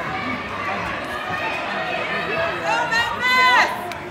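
Crowd chatter and shouting voices echoing in a gymnasium, with one loud, drawn-out shout about three seconds in.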